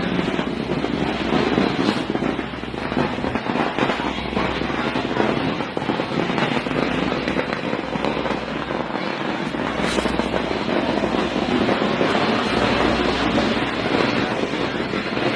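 A long string of firecrackers going off in a rapid, continuous run of small bangs that merge into one unbroken crackle.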